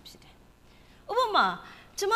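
A woman preaching: a pause of about a second, then one short, loud spoken word with a falling pitch, then a brief pause.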